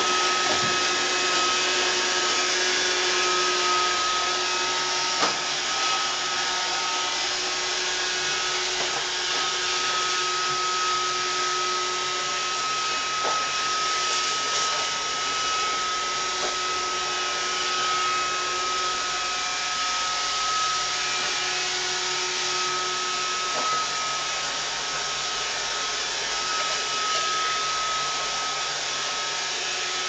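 iRobot Roomba robot vacuum running on a tile floor: a steady whirring hum with a high whine held throughout, and a few light knocks along the way.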